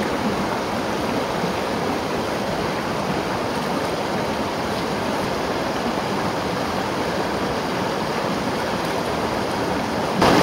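Shallow mountain stream running over stones, a steady rush of water.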